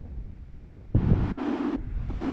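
Wind rumbling on the microphone, then about a second in a sea wave breaks onto a pebble beach, a sudden loud rush of surf that keeps going.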